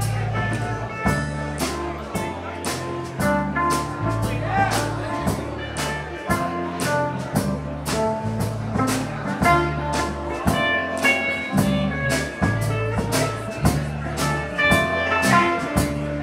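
Live blues-rock band playing an instrumental passage: drum kit keeping a steady beat under electric bass and electric guitar lines.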